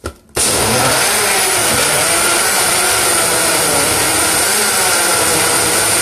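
Electric blender switched on with a click, starting suddenly and running steadily at full speed as it blends fruit into a smoothie, with a high whine over the motor and blade noise.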